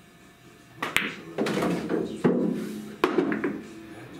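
A pool shot: a sharp click of the cue tip on the cue ball about a second in, then clacks and a rumbling roll as the purple object ball drops into a pocket and runs down through the coin-op table's ball return, with a final knock near the three-second mark.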